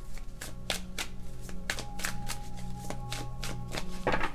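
Tarot cards shuffled by hand: a steady run of short card slaps and clicks, about five a second. Quiet background music with steady low tones plays underneath.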